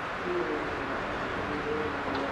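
A bird's low hooting or cooing calls: a few short notes at slightly different pitches, over a steady background of outdoor noise.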